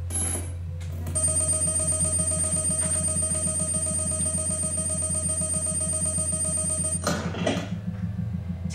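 An electric bell rings steadily with a fast rattle for about six seconds, then cuts off suddenly near the end.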